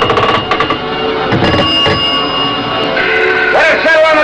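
Dramatic background score with steady held tones. A quick run of sharp clicks or rings comes in the first second, and low thuds come about one and a half seconds in.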